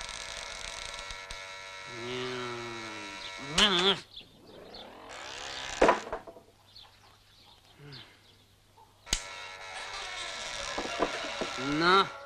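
An electric doorbell buzzing twice at a gate. The first steady buzz lasts about three and a half seconds; the second starts about nine seconds in and runs about three seconds.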